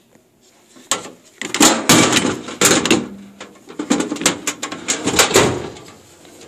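Steel Craftsman tool cabinet drawers being slid shut and pulled open, with a run of clanks and rattles of metal starting about a second in.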